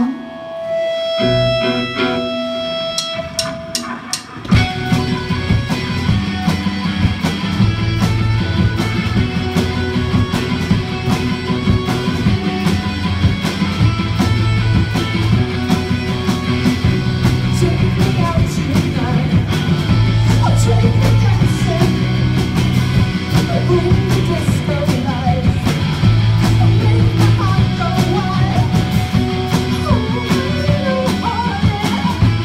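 Live rock band playing: a lone held guitar note rings for the first few seconds, then drums, bass and electric guitars come in together about four seconds in with a steady, driving beat, with a voice singing over it.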